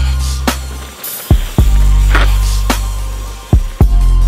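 Background music: an electronic hip hop track with a long, deep sustained bass and booming bass-drum hits that fall in pitch, landing in pairs about a second in and again near the end.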